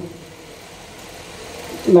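A pause in a man's speech with only faint, steady background hiss. The voice breaks off at the start and comes back just before the end.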